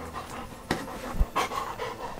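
A dog panting.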